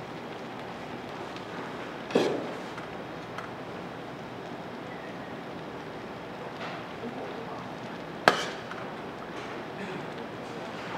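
A pan of tteokbokki simmering on a portable gas stove, a steady bubbling hiss, broken by two sharp knocks, about two seconds in and again about eight seconds in.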